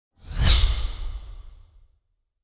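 Whoosh sound effect for an animated logo intro: one rushing swell with a deep rumble beneath it, peaking about half a second in and then fading away over the next second.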